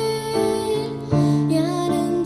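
A girl singing a slow, gentle song, holding notes with a slight waver, over keyboard accompaniment that moves to a new chord about a second in.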